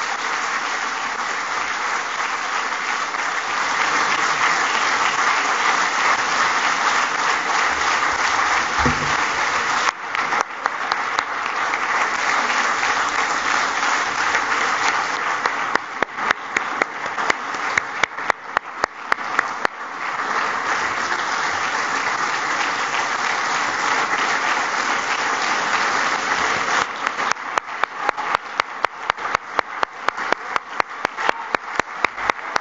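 Audience applauding: a dense, steady ovation that thins to separate claps about halfway through, swells again, and thins once more to distinct individual claps near the end.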